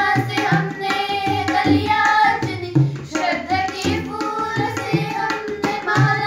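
Two girls singing a Hindi welcome song (swagat geet) together, accompanied by a tabla whose bass and treble drum strokes keep a steady rhythm under the voices.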